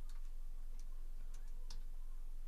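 A few faint, irregularly spaced clicks over a steady low hum, the sharpest click near the end.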